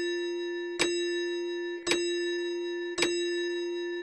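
Clock chime striking the hour, one bell-like strike about every second, each ringing on and fading into the next; these are the strikes of the clock striking six.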